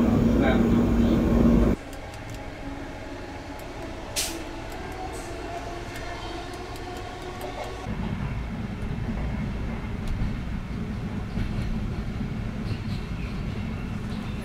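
Running noise of a moving passenger train heard from inside the carriage: a steady low rumble and rattle, with one sharp click about four seconds in. The sound changes abruptly twice, dropping sharply near the start and growing heavier in the low end about halfway through.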